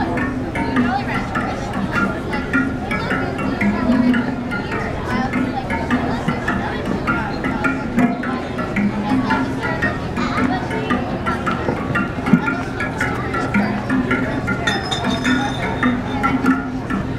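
Wind-driven aeolian musical machine (Sonic Windmill) turning in the breeze, giving a low droning tone that shifts between two pitches, with frequent wooden clicks and clinks from its moving parts.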